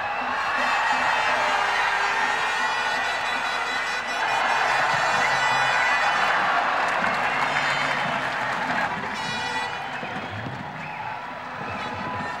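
Football stadium crowd noise, swelling about a second in and again louder from about four to eight seconds, then easing off, with background music underneath.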